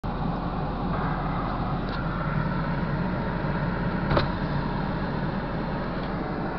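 A vehicle's engine running steadily, heard from inside the cab as an even low hum, with a single sharp click about four seconds in.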